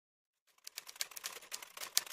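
Intro sound effect of rapid, irregular clicking and scratching, starting about half a second in, with a sharper click near the end.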